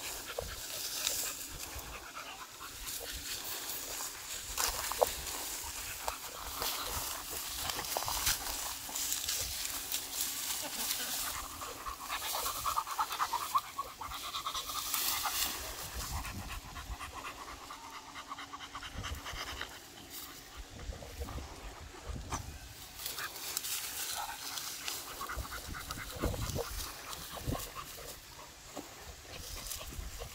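A beagle panting as it pushes through tall grass, the blades rustling and crackling while it bites and tugs at them.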